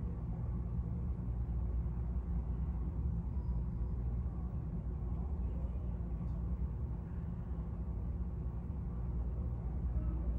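Steady low hum of a hall's air-conditioning or ventilation, with no other distinct events.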